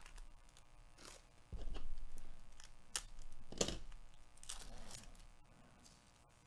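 Trading-card pack wrapper being torn open by hand: several short rips and crinkles spread over a few seconds as the cards are pulled free.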